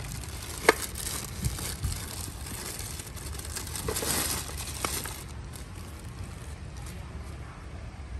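Clear plastic wrapping crinkling and rustling as a power tool is handled and pulled out of it, with a few sharp clicks in the first five seconds. It quietens after about five seconds.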